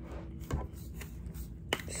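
Handling of a plastic Prime sports-drink bottle: two sharp clicks, about half a second in and near the end, the second followed by a brief rustle as hands work at the bottle's neck and cap.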